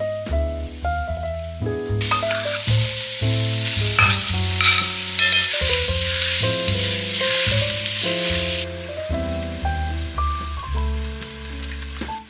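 Chopped onion and peppers sizzling in oil in a pot on a gas burner, stirred with a spatula, with a few sharp scrapes about four to five seconds in. The sizzle starts about two seconds in and cuts off suddenly near nine seconds. Background music with a steady bass line plays throughout.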